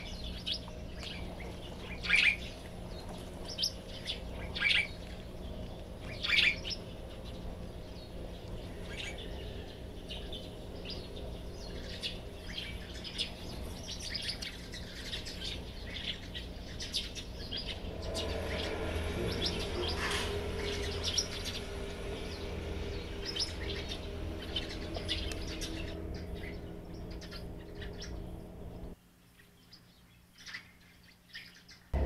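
Sparrows chirping close to the mic inside a nest box with tiny hatchlings: three loud, sharp chirps in the first seven seconds, then many fainter quick chirps, over a steady low electrical hum. The sound drops away sharply about a second before the end.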